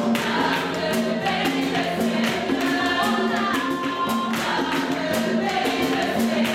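A choir singing a gospel praise song over a steady percussive beat.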